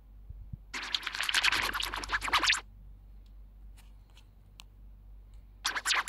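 A short audio clip played back through a web voice changer's wobble pitch-distortion effect, heard as a rapid, stuttering flutter. It plays for about two seconds starting just under a second in, then starts again shortly before the end.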